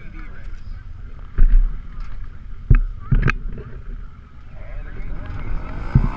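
Handling knocks on a camera mounted in a UTV cab as it is repositioned: a few sharp thumps, the loudest about one and a half and two and three-quarter seconds in, then a quick pair near three seconds in. Beneath them is a low steady rumble, with faint voices in the background.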